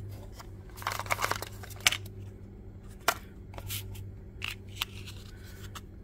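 Cardboard box and paper insert of a Quad Lock vibration dampener being opened and handled: scattered rustles and short clicks, busiest about a second in, over a steady low hum.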